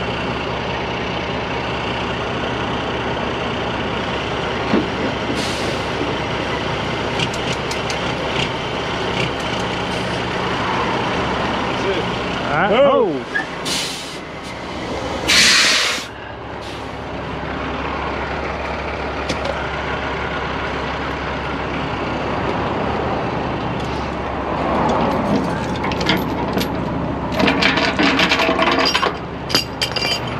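Heavy truck's diesel engine idling steadily, with a brief swing in engine pitch about halfway through, followed by a short hiss and then a loud hiss of air brakes. Sharp metal clinks come near the end.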